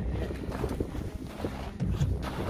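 Wind buffeting the microphone, a steady low rumble, with a few faint clicks as the tip-up's line and reel are handled.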